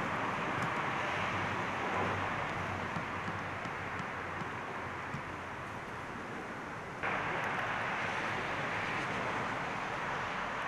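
Steady outdoor background noise, an even rushing hiss with no distinct events. It dips a little in the middle, then jumps back up abruptly about seven seconds in at a cut.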